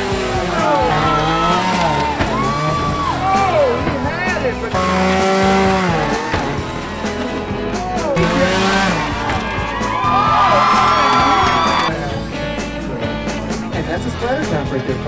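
Trials motorcycle engines revving in repeated throttle blips, pitch rising and falling, with a harder sustained rev that cuts off suddenly about twelve seconds in. Music plays underneath.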